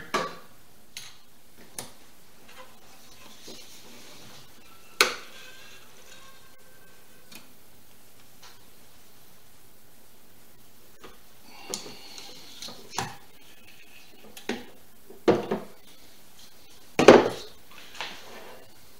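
Clicks and knocks of metal and glass as a double-lever hand wine corker is worked on a glass wine bottle, scattered over a quiet background. A sharp click about five seconds in, then a cluster of knocks in the last six seconds, the loudest shortly before the end.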